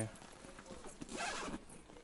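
Rustling and rubbing from a handbag being handled and lifted, with its plastic-wrapped stuffing crinkling. The rustle grows louder about a second in.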